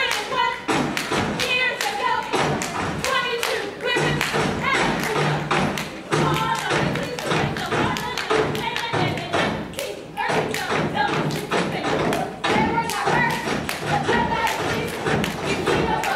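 A step team stomping and clapping in a fast, loud rhythm, with voices chanting through it.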